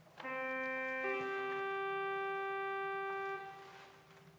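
Slow music on a keyboard instrument: a held low note steps up to a higher held note, which fades away near the end.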